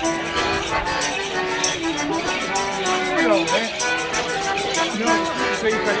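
Live folk dance tune played outdoors by a street band with a saxophone, a melody of held and stepping notes over a steady rattling beat, with crowd voices underneath.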